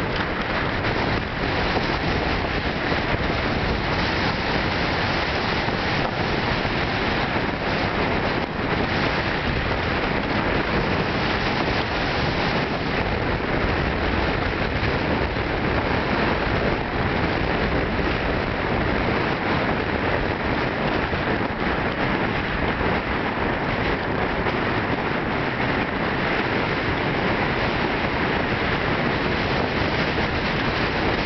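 Steady loud rushing noise of wind buffeting the camera microphone, unbroken throughout.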